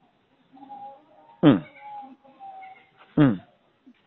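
An animal calling twice: two short cries, each sliding quickly down in pitch, about a second and a half apart, over faint background sounds.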